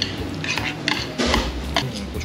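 Chopsticks clinking against a bowl and dishes as jjajangmyeon noodles are lifted and mixed, a series of short, irregular clicks.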